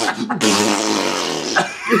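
A man blowing a raspberry through his lips, one buzzing, fart-like noise lasting about a second, mimicking fat bodies rubbing and slapping together.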